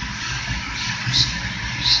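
Boiler room machinery running: a steady low hum under an even rushing hiss.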